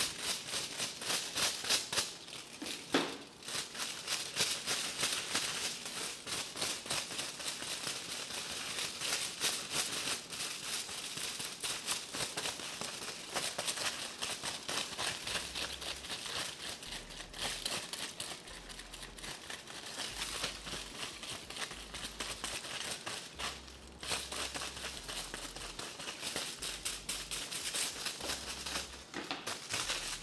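Aluminium hair foil crinkling and rustling as a tint brush spreads bleach over a strand of hair laid on it, a dense run of quick scratchy strokes.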